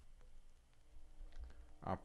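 Faint, sparse clicks of typing on a computer keyboard and clicking a mouse. A man's voice starts just at the end.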